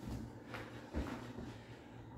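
Soft thuds and shuffling of a person putting his hands down on a floor mat and moving from kneeling into push-up position, three faint knocks in the first second, over a low steady hum.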